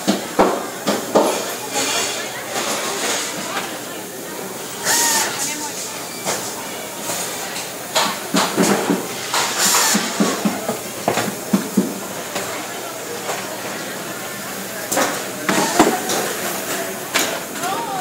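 Busy factory assembly floor: background voices of workers, clatter and knocks of parts and tools, and a couple of short hisses about five and ten seconds in.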